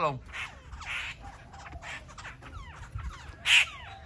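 Caged laughingthrushes calling: quick thin whistled notes sliding up and down, broken by a few short harsh squawks, the loudest about three and a half seconds in.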